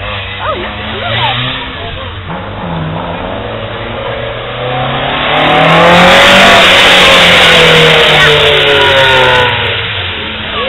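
Mk2 Ford Escort's engine revving hard as the car drifts past, growing louder to a peak about six seconds in and then dropping in pitch as it pulls away. The tyres hiss on the wet tarmac throughout the pass.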